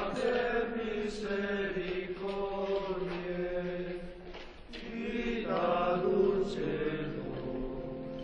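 Choral chant: a group of voices singing slow, long-held notes over a steady low drone, with a short break in the line about four and a half seconds in.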